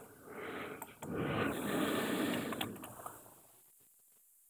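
A man breathing close to the microphone: a couple of long, noisy breaths that swell and fade out before the end, with a few sharp mouse clicks.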